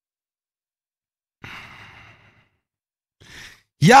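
A man sighing into a close microphone, an exhale about a second long that comes out of silence, followed by a short faint breath and then the start of speech near the end.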